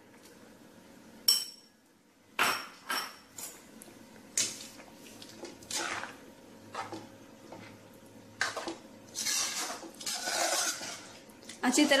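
A metal spoon stirs a block of butter into thick pav bhaji in a metal kadai, with irregular scraping and knocks against the pan. After a single click near the start, the stirring begins about two seconds in and turns into longer scraping strokes toward the end.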